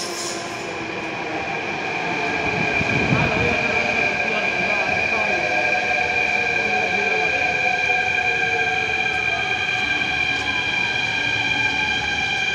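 A Delhi Metro train pulling into the platform and braking to a stop. Its electric drive makes a high whine of several steady tones, while lower tones glide slowly down as it slows, over a rumble of wheels on rail.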